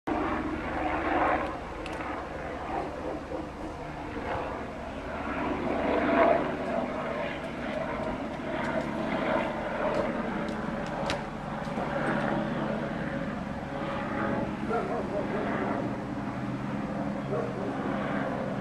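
A steady low engine drone, with voices talking in the background.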